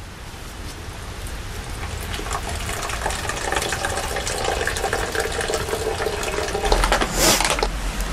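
A small stream trickling and splashing steadily, gradually getting louder, with a brief hiss about seven seconds in.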